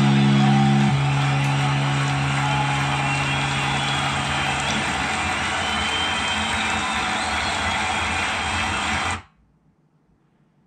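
Distorted electric guitar through an amplifier: a held chord rings and breaks off about a second in, lower notes fade out a few seconds later, leaving a steady wash of distorted noise that cuts off suddenly near the end.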